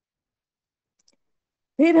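Near silence broken by a single faint short click about a second in, then a voice starts speaking near the end.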